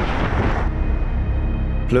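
Dark documentary music bed with a sudden rushing whoosh at the start that fades within about half a second into a steady low rumble.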